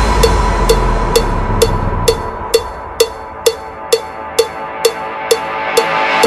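Electronic dance music from a DJ mix: a steady beat of sharp percussive hits, about two a second, over a held tone, with the deep bass dying away in the first few seconds.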